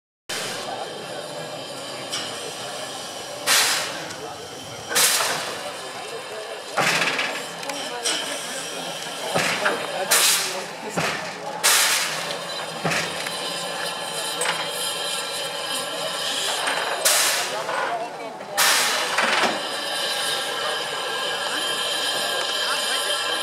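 Steam tank locomotive 91 134 hissing steadily, with several loud bursts of steam at irregular intervals, a second to a few seconds apart, over background voices.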